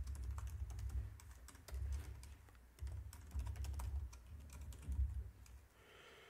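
Computer keyboard typing: an irregular run of key clicks with short pauses between bursts.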